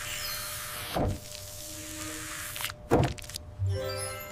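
Cartoon sound effects: a hissing spray as cooling gel is squirted from a spray gun, then two short swishes about two seconds apart, over soft background music.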